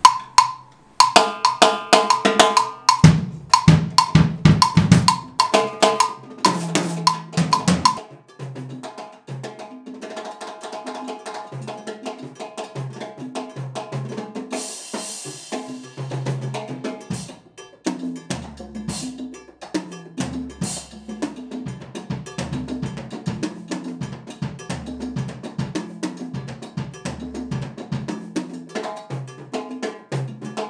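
Timbales and a mounted cowbell played with sticks in a Cuban rhythm. Loud, rapid strikes on the drums and bell fill the first eight seconds, then a steady, quieter cowbell pattern carries on with lighter drum hits underneath.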